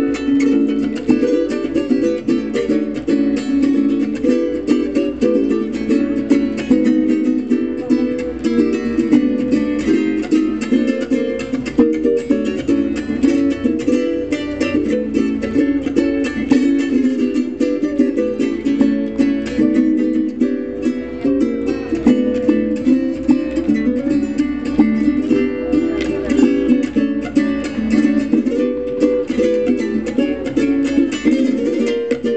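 A duet of Venezuelan cuatros playing an instrumental piece: a fast, steady strummed rhythm with plucked melody notes over it.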